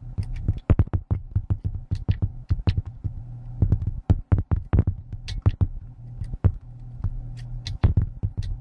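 Irregular clicks and taps of metal picking tools working the levers of a Union 2101 five-lever lock under heavy tension, over a steady low hum.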